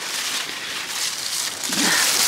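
Dry, dead squash leaves rustling and crackling as they are pulled out of the plants by hand.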